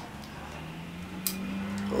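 Scissors clicking shut on a cloth wristband without cutting through it: one sharp click a little past halfway, then a couple of lighter ticks, over a low steady hum.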